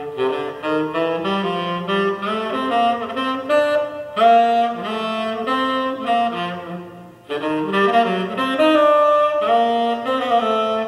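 Music played from an LP on a Garrard 301 turntable through LaHave Audio loudspeakers driven by Berning vacuum-tube amplifiers, heard in the room. A lead instrument carries a melody of held notes over lower accompanying notes, with a brief break about seven seconds in.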